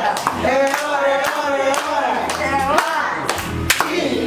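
A small group clapping their hands, irregular claps rather than a steady beat, with women's raised voices and laughter over them.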